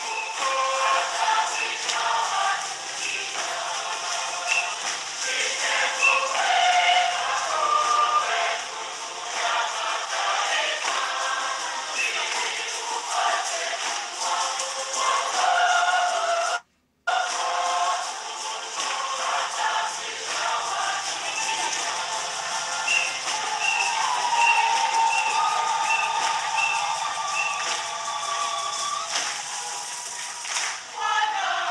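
Choir singing a hymn, with a brief dropout in the sound a little past halfway.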